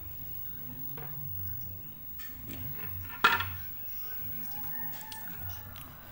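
Steel plates of a hinged semprong egg-roll mold being handled, with one sharp metallic clack about three seconds in as the plates close against each other, ringing briefly; the plates meet tightly.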